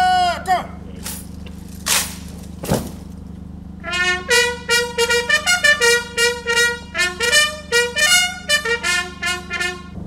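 A drawn-out shouted parade command ends about half a second in, followed by two short noisy bursts. From about four seconds in a military bugle plays a quick salute call of many short notes on a few pitches, over a steady low hum.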